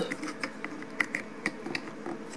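A few light, sharp clicks and taps of a small cable adapter being handled and fitted over a connector on the back of a projector.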